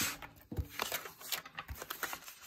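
Sheets of a disc-bound paper planner being handled: paper rustling and several short clicks as a page is pressed onto the binding discs and the pages are flipped.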